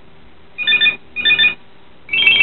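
A telephone ringing: a double ring of two short, trilling rings in quick succession, with a short gap between them.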